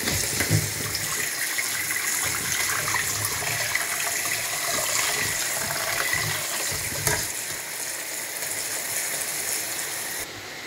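Thick tomato sauce sizzling and bubbling in a frying pan while a wooden spatula stirs it, giving irregular soft thuds against the pan through the first several seconds.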